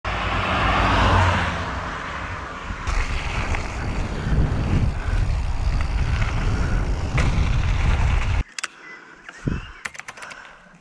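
Riding noise from a point-of-view mountain bike camera: tyre rumble on asphalt and gravel with wind on the microphone, and a car passing about a second in. The noise cuts off abruptly near the end, leaving a few faint clicks.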